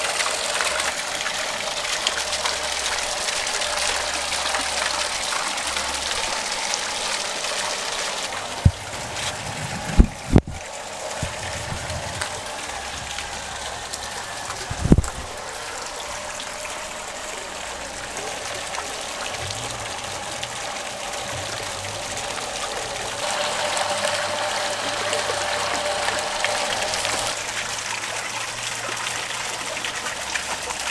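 Water pouring steadily from an aquaponic system's filter outlet pipe and splashing into the fish pond, with a few dull low thumps about ten and fifteen seconds in.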